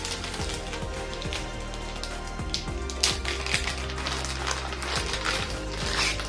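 Thin plastic packaging crinkling and rustling in short irregular bursts as a padded binocular strap is unwrapped by hand, over quiet background music.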